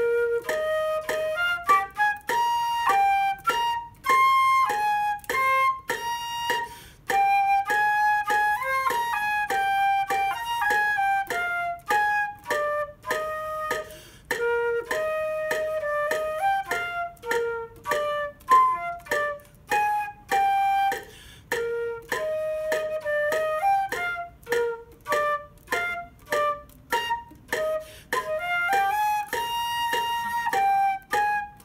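A solo concert flute plays a melody in three-four time. A metronome clicks steadily at 100 beats a minute underneath.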